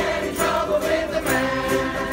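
A large ukulele group strumming and singing together, many voices on one song over steady strumming.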